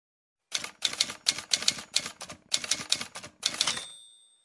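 Typewriter keys clacking in a quick run of about fifteen strikes, four or five a second, ending with a short bell-like ding.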